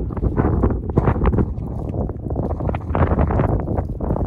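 Wind buffeting the microphone: a loud, gusting low rumble with irregular knocks and crackles running through it.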